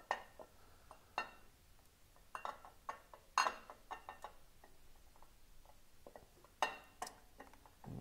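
The chrome rocker box cover of a Harley-Davidson Twin Cam engine clinking and knocking against the engine as it is worked loose by hand, its bolts already out. The sharp metal clinks come one at a time and at uneven intervals, the loudest about three and a half seconds in and again near seven seconds.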